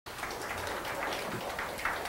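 Small audience applauding: many quick overlapping claps.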